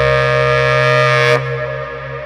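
Jazz trio music: a long held saxophone note over a sustained low bass tone, the saxophone note breaking off abruptly about a second and a half in.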